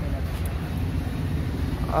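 Steady low background rumble with no distinct events. A voice starts right at the end.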